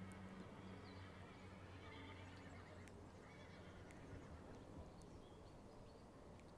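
Near silence: faint sounds of a horse cantering on an arena's sand footing, under a faint low steady hum.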